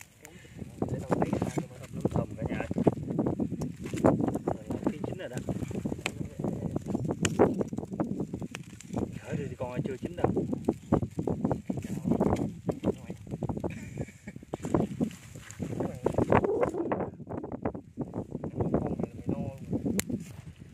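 People talking in Vietnamese almost throughout, with scattered small sharp clicks among the talk.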